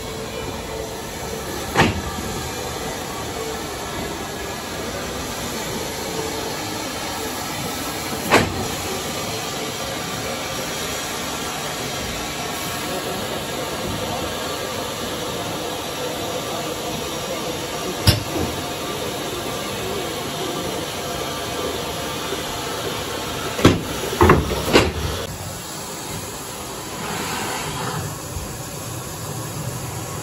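S&D 7F 2-8-0 steam locomotive 53808 hissing steadily with steam at the platform, with a few sharp knocks: single ones about 2, 8 and 18 seconds in and a quick cluster of three near 24 seconds.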